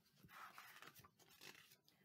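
Near silence: room tone, with a faint soft rustle about half a second in.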